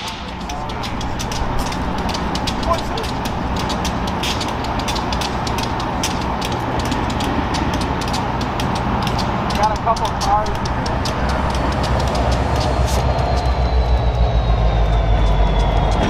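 Diesel locomotives idling, a steady low engine hum with many scattered clicks; a deeper rumble builds over the last few seconds.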